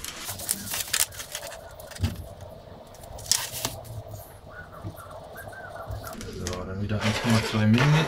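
Clicks and light knocks from a folding rule being handled and laid on a plywood board, then a short scratchy pencil stroke marking the board about three seconds in. A man's voice mutters near the end.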